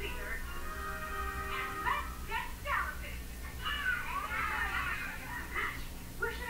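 The cartoon's soundtrack playing from a TV across a small room: characters' voices singing over music, with a steady low hum underneath.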